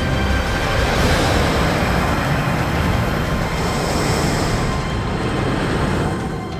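Leviathan wooden roller coaster train running along its wooden track: a loud, continuous rumble of wheels on the rails.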